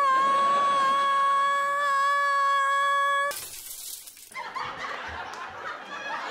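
A woman singing one long, high, sustained note that stops abruptly about three seconds in. A brief burst of hiss follows, then canned sitcom laughter.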